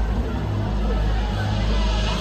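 Electronic dance music from a DJ set played loud over the PA, here a deep, steady bass with no clear beat, under crowd chatter.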